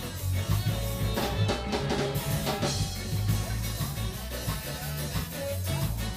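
Live ska band playing, with drums, electric guitar and a moving bass line.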